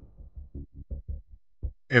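A run of about eight short, low thuds from the soundtrack's music or sound effects, unevenly spaced and fading out over a second and a half.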